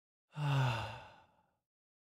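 A man's voice giving one breathy sigh, falling slightly in pitch, about a second long and starting a third of a second in.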